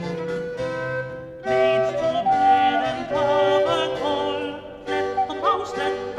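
Early-music ensemble performing an Elizabethan song, with steady sustained pitched lines. It dips briefly and a new phrase comes in about a second and a half in.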